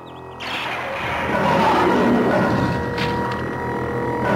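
Cartoon soundtrack: background music with a loud, noisy sound effect that comes in about half a second in and grows.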